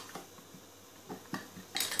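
A screwdriver working the terminal screws of a plastic wall switch: a few small metallic clicks and scrapes, then a louder quick run of clicks near the end as the tool and switch are handled.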